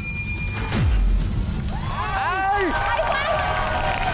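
Edited game-show sound: background music with a short bright chime right at the start, a downward-sweeping bass drop just under a second in, and from about two seconds on several people shouting excitedly over the music.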